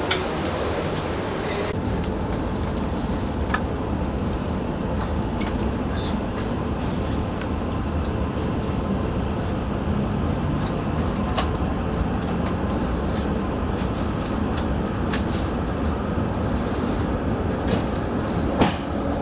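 Steady low rumble of a Shinkansen train heard from inside the passenger car as it pulls out of the station and runs on, with a few sharp clicks.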